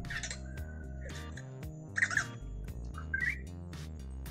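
Anki Vector robot's short electronic chirps and squeaks, ending in a rising squeak past the three-second mark, as it plays its reaction animation after being shaken, over steady background music.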